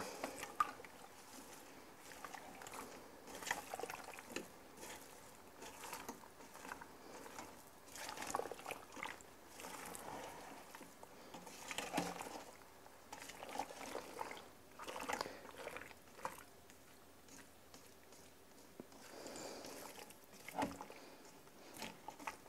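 A spoon stirring thick, creamy pasta with freshly added Parmesan cheese in the stainless steel inner pot of an Instant Pot: faint, wet squelching and scraping in irregular strokes every second or two.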